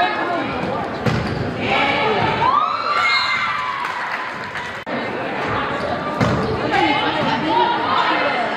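Indoor volleyball rally in a hardwood-floored gym: the ball is served and struck with sharp smacks, sneakers squeak on the floor, and players and spectators shout and cheer, echoing in the large hall.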